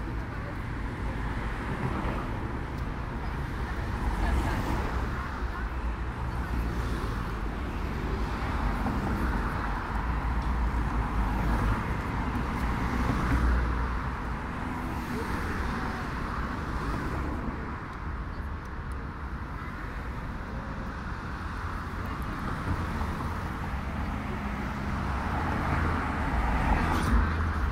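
Road traffic on a wide city avenue: cars driving past with a steady rumble of engines and tyres, swelling as vehicles go by, about four seconds in and again around twelve seconds.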